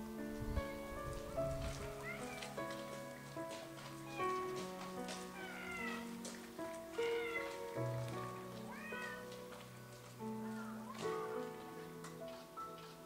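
Domestic cat meowing repeatedly, about six short calls that rise and fall in pitch, every second or two, over soft background music with held notes.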